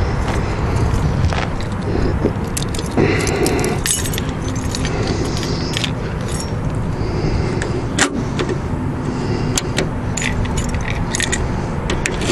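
A bunch of car keys jangling in the hand, with scattered light metallic clicks over a steady low hum and one sharper knock about eight seconds in.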